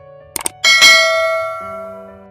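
Subscribe-button sound effect: two quick clicks, then a bright bell ding that rings out and fades over about a second, over soft background music.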